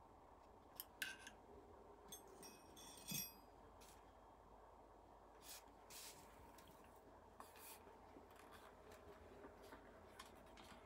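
Near silence broken by faint, scattered small metallic clicks and ticks. They come from an Allen key in an air rifle's regulator adjuster and from handling the rifle, with a brief cluster of ringing ticks about two to three seconds in.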